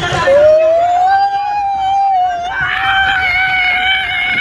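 A man's long, sustained yell while sliding down a water slide, starting just after the push-off, rising slightly at first and then held at one pitch.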